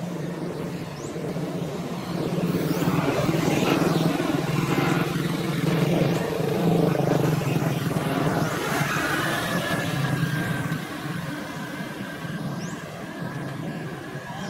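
A motor vehicle engine running, a steady low hum that grows louder a couple of seconds in and fades again near the end, as of a vehicle passing or running close by.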